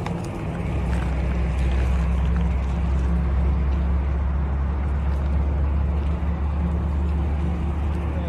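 An engine running steadily nearby: a constant low drone with no change in speed.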